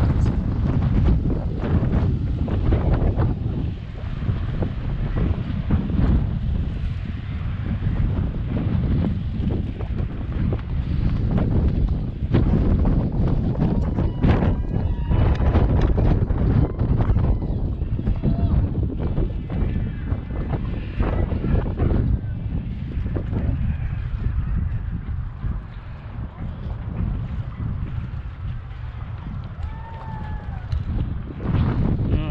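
Wind buffeting the microphone in uneven gusts, a heavy low rumble that swells and eases throughout.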